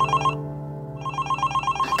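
Smartphone ringing: an electronic ringtone of rapid repeating beeps, in two bursts with a short pause between them.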